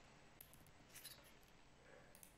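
Near silence: room tone with a few faint, short clicks of computer keys, about half a second and a second in.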